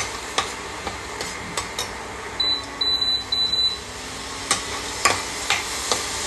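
Coconut solids sizzling in a stainless steel kadai over low heat as a metal spatula stirs and scrapes through them, with light clicks of the spatula against the pan; the oil has separated out from the coconut. About halfway through a high electronic beep sounds in three short pulses.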